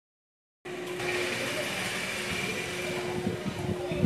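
Steady background noise with a constant low hum, cutting in abruptly under a second in after dead silence.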